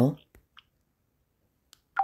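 A voice over a phone line trailing off at the start, then two faint clicks and the line going nearly silent, a dropped or stalling call connection.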